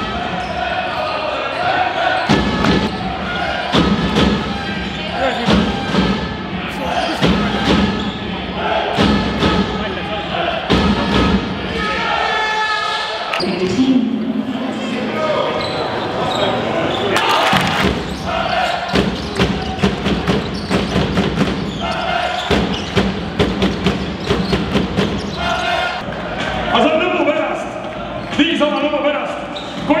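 A basketball bouncing repeatedly on a hardwood court in a large arena hall, under a steady din of crowd voices.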